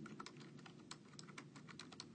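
Typing on a keyboard: keys clicking faintly in quick succession as data is keyed into a spreadsheet.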